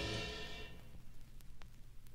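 The last electric-guitar chord of a blues track dies away in the first half second or so, leaving the faint hum and surface noise of a vinyl LP in the gap between tracks, with two sharp clicks about a second and a half in.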